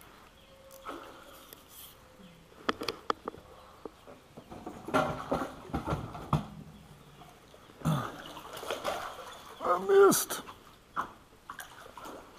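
A man's wordless grunts and excited shouts while he fights a hooked fish at the side of the boat, the loudest shout coming near the end. There are a few sharp clicks about three seconds in.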